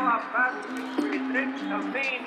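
A voice talking over a steady low held tone, with sharp smacks of volleyballs being hit and bouncing in a large sports hall, one clear smack about a second in.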